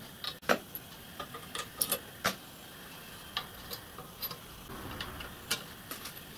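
Small metal screws and bolts clicking and tapping as they are handled and fitted into a painted metal chassis frame: irregular sharp clicks, the loudest about half a second in and a quick cluster around two seconds.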